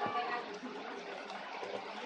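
Origami paper being folded and creased by hand, a soft continuous rustle, with a sharp tap against the table at the very start.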